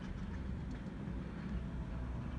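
Low, steady rumble of background noise inside a stationary car's cabin.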